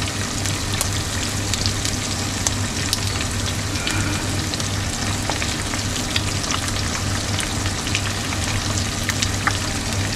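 Eggs frying in hot olive oil in a pan: a steady sizzle with scattered small pops and crackles, as hot oil is spooned over the yolks to set them. A low steady hum runs underneath.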